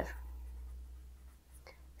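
Marker pen writing on paper: faint strokes of the tip as a word is written out.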